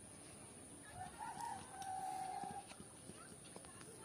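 A rooster crowing once, starting about a second in: a short rising opening, then one long held note.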